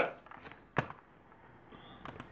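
One sharp computer click about a second in, over faint room tone.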